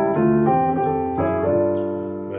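Piano sound from a digital synthesizer keyboard: gospel chords and notes struck one after another, about every half second or so, each left to ring into the next.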